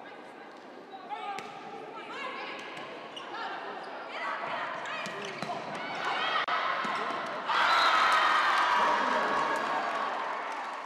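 Volleyball rally on a gym's hardwood court: sharp ball contacts, shoes squeaking and players calling out. About seven and a half seconds in, it breaks into loud cheering and shouting as the point is won.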